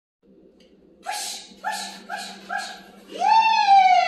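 A dog giving four short, high yips, then a long, loud whine that slowly falls in pitch.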